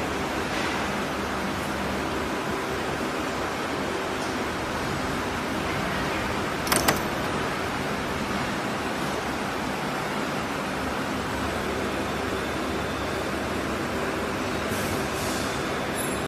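Semi-automatic terminal crimping machine running with a steady noise, with one sharp double click about seven seconds in as the press makes a crimping stroke.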